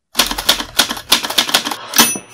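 Typewriter sound effect: a rapid run of keystroke clicks, about seven a second.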